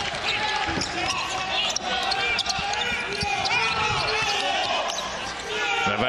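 A basketball being dribbled on a hardwood court in repeated bounces, with sneakers squeaking in short high chirps, over the noise of an arena crowd.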